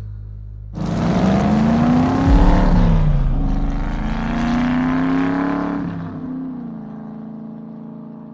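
Black 1967 Chevrolet Impala driving away with its engine accelerating. Its engine note climbs, drops back, climbs again, then fades out.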